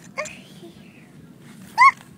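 Two short, high-pitched yelping cries from a child's voice: a faint rising one just after the start and a loud, arching one near the end.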